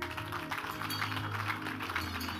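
Background music with steady held low notes, under a crowd clapping.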